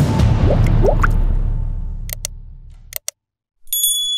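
Channel intro sting: a deep, loud hit that dies away over about three seconds, with two short rising bloop effects about half a second and a second in. A short high, bell-like notification chime comes near the end.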